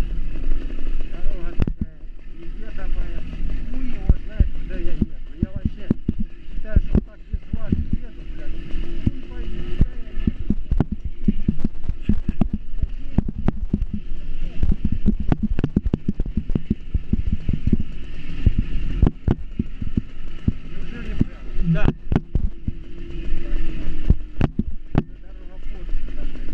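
Small motorcycle riding over a rough dirt and brick lane: a low engine hum under a steady rumble, broken by many irregular knocks and rattles from the bumps.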